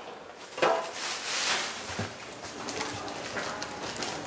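Kitchen handling noises as a baguette is brought to a plastic cutting board and cut with a knife. There is a rustle about a second in, a single knock at about two seconds, then light scattered clicks of the knife and board.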